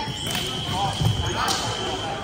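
Electric fencing scoring machine's steady high beep, held for about a second and a half as a touch registers, over voices and the stamp of footwork on the strip.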